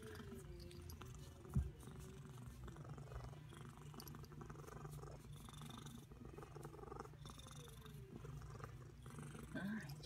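Domestic cat purring steadily while its chin is scratched, the purr picked up close. A single soft thump comes about one and a half seconds in.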